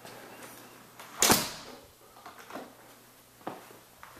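A single sharp thump with a brief rustle about a second in, followed by a few soft taps of footsteps on the floor.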